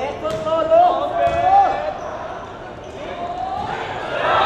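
Volleyball being struck during a rally in an indoor hall: a couple of sharp hits of the ball, under voices shouting.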